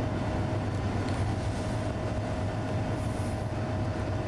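A steady low rumble with a thin, even hum above it. It starts suddenly just before the pause and holds level throughout.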